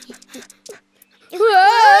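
A cartoon character's high, wavering laugh, loud, starting about a second and a half in, after a few soft taps.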